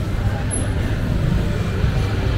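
Busy market ambience: a crowd of shoppers chattering over a steady low rumble.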